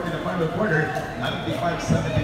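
Indistinct talking from spectators around a basketball court, with a single short knock near the end.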